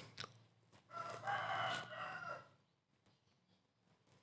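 A rooster crowing once, a single pitched call of about a second and a half.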